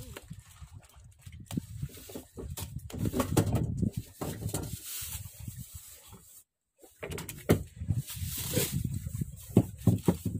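Irregular knocks and thumps of freshly caught tuna flapping in a plastic bucket and against a wooden boat, over a steady rush of wind and sea.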